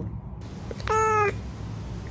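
A cat meowing once, a short meow about a second in.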